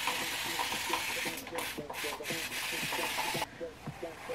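Hand spray bottle misting water onto hair, wetting it so it can be shaped: a steady hiss with a few brief breaks that stops suddenly about three and a half seconds in.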